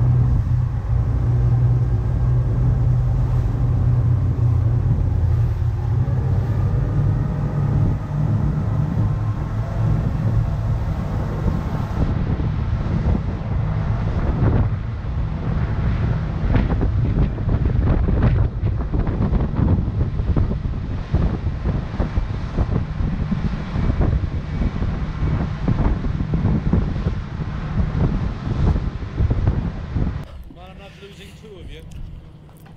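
Motorboat engines running at speed, a steady low drone under wind buffeting the microphone and water rushing past the hull. From about halfway it grows rougher, with many short knocks and slaps as the boat runs through the chop.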